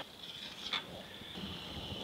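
Quiet kitchen room tone with a steady faint high-pitched hum, and a single light click a little before the middle.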